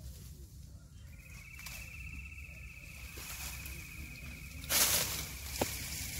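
A steady high-pitched insect trill starts about a second in and keeps going, over a low outdoor rumble. Near the end a brief loud rustle of branches and reeds, then a small click.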